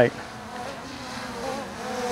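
DJI Mavic Air 2 quadcopter's propellers buzzing in flight as it is flown through a turn, a steady hum with a slightly wavering pitch that grows louder near the end.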